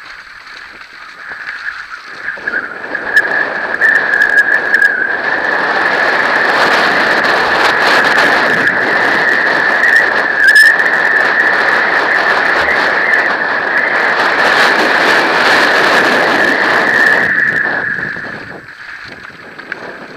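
Mountain bike descending a dirt trail at speed, heard from a helmet camera: continuous tyre and rattle noise that builds over the first few seconds, holds and fades near the end, with a steady high-pitched whine over it.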